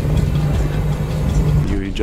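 Low rumble of wind and road noise picked up by a camera mounted on a racing road bike at high speed, with a steady low hum underneath.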